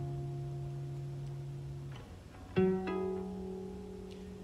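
Acoustic guitar chord ringing and fading, then another chord strummed about two and a half seconds in and left to ring.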